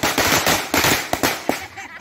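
A string of firecrackers bursting in a bonfire, a fast run of sharp cracks for about a second, then a few single loud bangs.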